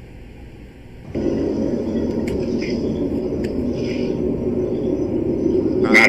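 A steady low rumbling drone from the sky that starts abruptly about a second in, one of the reported mysterious sky sounds, with a few faint clicks over it.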